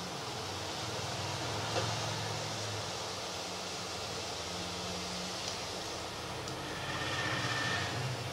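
Steady hiss with a faint low hum from a pan of curry gravy simmering on an induction cooktop.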